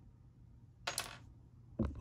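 A single short metallic clink about a second in, against near-silent room tone.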